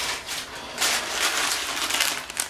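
Paper packet of guitarrón strings rustling and crinkling as it is picked up and handled, in uneven rustles.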